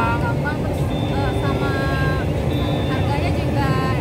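People's voices over a steady low rumble of outdoor background noise.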